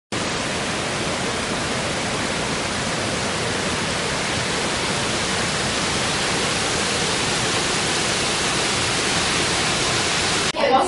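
Water rushing over a small mill dam: a loud, steady, even rush with no rhythm or pitch.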